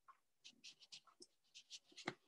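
Near silence: room tone with a scatter of faint, short clicks.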